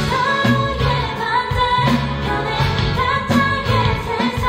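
A live pop-rock band: a female lead vocal sings over electric guitar, bass guitar and a Yamaha drum kit.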